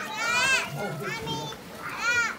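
Young children's high-pitched wordless calls while playing: a loud one about half a second in, and a fainter, shorter one about a second later.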